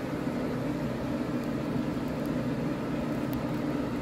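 A steady low mechanical hum with a few faint ticks.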